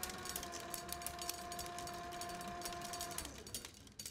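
A reel spinning fast on a motor-driven film or tape machine: a steady whine with rapid clicking. A little after three seconds the whine dips in pitch and fades as the reel winds down.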